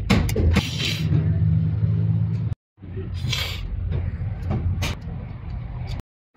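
Metal clinks of a wrench working on engine fittings over a steady low hum, with a few short noisy scrapes and rattles.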